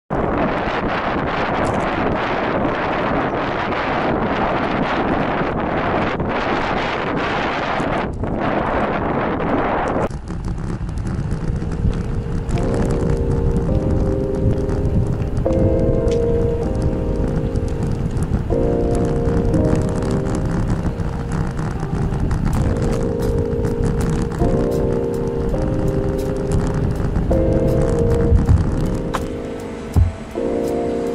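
Wind rushing over the microphone of a camera on a moving bicycle, a loud steady noise that cuts off abruptly about ten seconds in. Music with slow, held notes then plays over a low rumble.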